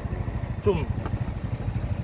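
AJS Modena 125cc scooter engine idling with an even, rapid pulse. It is being left running so it can charge the newly fitted battery.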